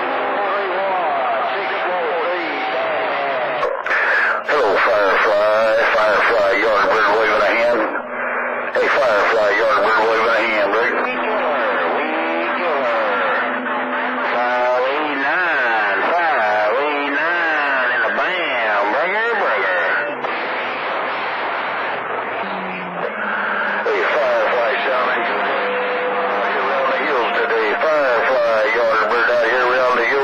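CB radio receiving skip on channel 28: distant operators' voices coming through garbled and overlapping, with steady tones held underneath them throughout.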